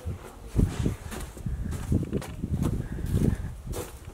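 Footsteps of a person walking across a barn's dirt floor: a series of irregular dull thumps.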